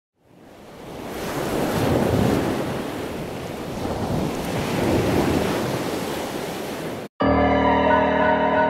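Ocean surf washing in on a beach, fading in and swelling twice, then cut off abruptly about seven seconds in, where piano music starts.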